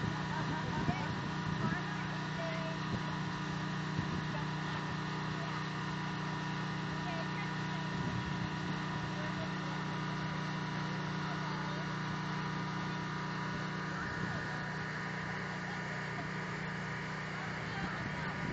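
A steady motor drone with a constant low hum, under faint chatter of people.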